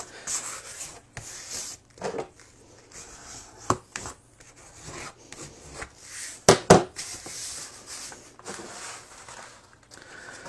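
Heavyweight gessoed watercolour paper being smoothed and creased flat, with hands and a scissors handle rubbing and scraping along the fold. A few sharp knocks break in, the loudest two close together about six and a half seconds in.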